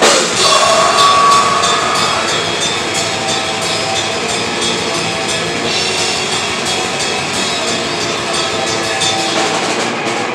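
A live hardcore metal band playing loud: distorted guitars and bass over a steady drum kit beat, recorded from within the crowd.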